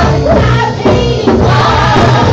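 Live gospel praise and worship singing through microphones: a female lead singer with backing singers, over a steady low bass accompaniment.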